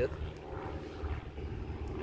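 Steady low background rumble with no clear rhythm or rise and fall.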